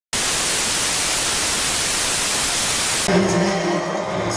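TV static hiss, a loud even white-noise rush, which cuts off suddenly about three seconds in and gives way to music with a low sustained tone.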